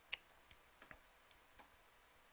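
A few faint, short clicks against near silence, the first and loudest just after the start: clicks at a computer as the chess moves are stepped through on screen.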